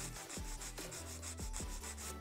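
A 180-grit hand file rasping across the free edge of an acrylic nail in quick, faint strokes, about three a second, squaring off the tip.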